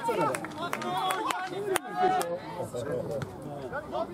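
Men's voices near the microphone, several people talking and calling out over one another, with a few sharp knocks among them, the loudest a little under two seconds in.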